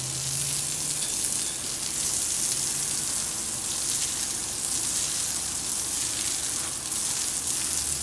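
Garden hose spray nozzle jetting water against a stucco wall, a steady hissing spatter, rinsing the wall down after a bleach-and-soap cleaning.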